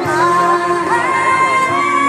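A woman singing a Norwegian folk ballad. She holds one long note that steps up slightly about a second in, over a steady low accompaniment.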